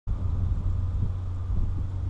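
Steady low rumble of wind buffeting the camera microphone.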